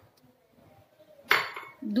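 A single sharp clink of a glass bowl against a hard surface about a second and a half in, ringing briefly as it fades.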